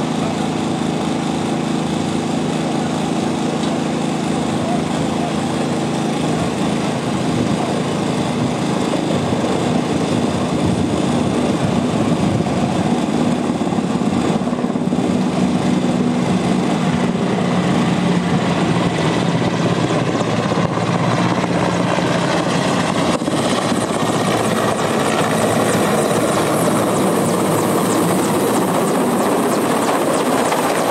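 Engines of the water tankers and their pumps running steadily while water pours into the pit, overtaken in the second half by the growing rotor and turbine noise of a large Mil Mi-8/17-type helicopter coming in to hover low over the water.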